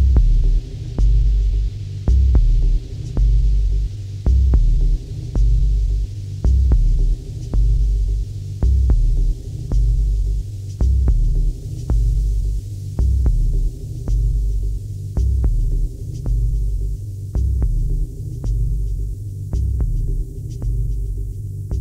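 Dub techno: deep, throbbing sub-bass pulses about once a second, with faint ticking percussion above. The airy upper haze thins out and fades over the second half.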